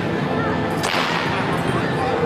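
A sharp, brief swish of a flexible tai chi sword blade whipping through the air, a little under a second in, over the chatter of a crowd in a large hall.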